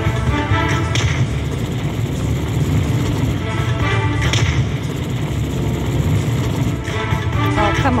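Konami 'New York Nights' poker machine playing its bonus-round music while the reels re-spin, with sharp thuds about a second in and again near the middle as the reels stop, over a steady low rumble.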